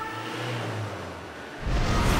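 End-screen sound design: a noisy whooshing rush over a low hum, then a louder hit with a deep low rumble about a second and a half in.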